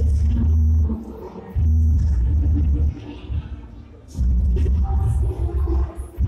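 Loud DJ music over a sound system, dominated by a heavy booming bass that overloads the recording. The bass comes in stretches of about a second, dropping away briefly twice.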